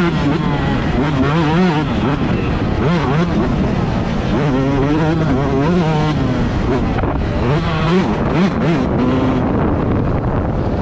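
Yamaha YZ125 two-stroke motocross engine under hard throttle, its pitch climbing and dropping over and over as it is ridden around the track.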